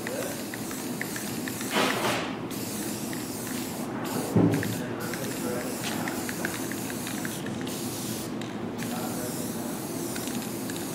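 Aerosol spray-paint can spraying blue paint onto plywood: a steady hiss that breaks off briefly several times as the nozzle is released and pressed again. A brief louder sound comes about four and a half seconds in.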